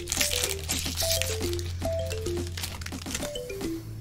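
Foil wrapper of a Pokémon TCG booster pack crinkling in the hands as the cards are pulled out, over background music: a repeating run of falling notes above a steady bass.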